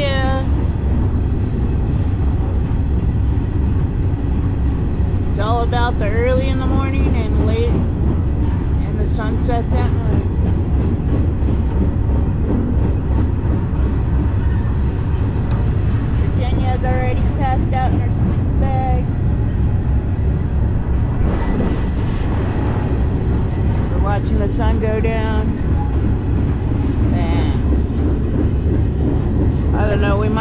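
Steady rumble and rattle of a moving freight train, heard from on board an open intermodal well car, with wind noise over it.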